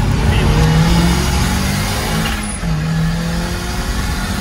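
Turbocharged Mazda Miata four-cylinder accelerating hard at full throttle, heard from inside the cabin: engine pitch climbs, drops at an upshift about two and a half seconds in, then climbs again before easing off.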